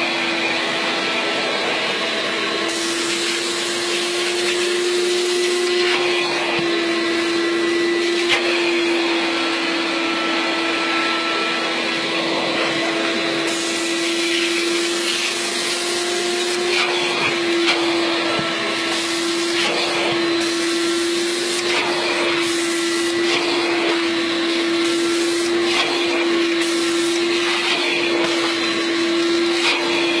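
Hot water carpet extraction machine's vacuum running steadily with a constant hum, and air and water hissing through the hand tool as it is drawn over the carpet. The hiss grows stronger and weaker every few seconds.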